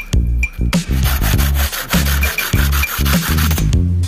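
Hand saw rasping back and forth through a bamboo stick, from about a second in until shortly before the end, over loud electronic background music with a heavy bass line.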